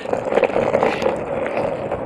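Skateboard rolling over rough asphalt: a steady rumble of the wheels with scattered small clicks and rattles.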